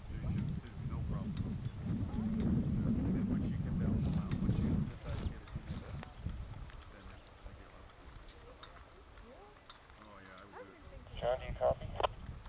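Wind rumbling on the microphone for about the first five seconds, then dying down. A short bit of voice comes in near the end.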